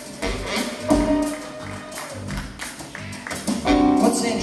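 Live band playing a short musical interlude, with guitar notes and several sharp percussive hits.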